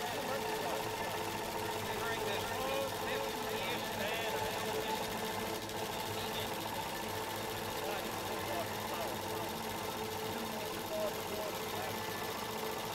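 Melco embroidery machine running steadily as it stitches lettering onto fabric, with warbling voice-like sounds mixed over it.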